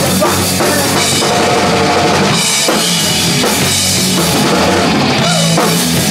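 Punk rock band playing live, loud and steady, with the drum kit to the fore over electric bass and guitar.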